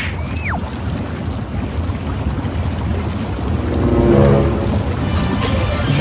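Jacuzzi jets churning the water: a steady, loud rush of bubbling. A short whistle-like tone falls in pitch just after the start, and a brief pitched sound rises and falls about two-thirds of the way through.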